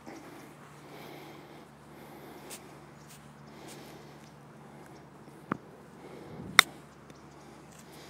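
An iron clubface striking a golf ball on a short chip shot: a sharp click. A second, fainter click comes about a second before it, over a quiet outdoor background.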